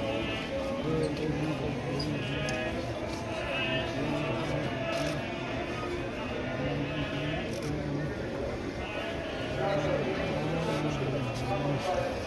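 A man chanting a prayer in long sung notes over the murmur of a crowd.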